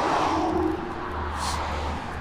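A car driving past on the road, its tyre and road noise swelling early and then easing off, with a low steady hum underneath.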